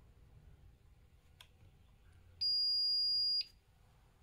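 Kosmos Bio-Clock's alarm going off: a single steady, high-pitched electronic beep about a second long, starting a little past halfway. It is one of the evenly spaced beeps of its 10-second alarm as the clock reaches the set alarm time.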